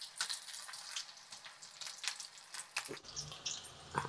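Pakodi batter frying in hot oil in a steel kadai: a faint, steady sizzle with scattered crackles and a couple of sharper pops near the end. The wet curry leaves in the batter make it crackle as it hits the oil.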